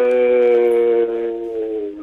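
A man's long, drawn-out hesitation vowel ("euhhh") held on one steady pitch that sinks slightly and fades a little in the second half, heard over a telephone line.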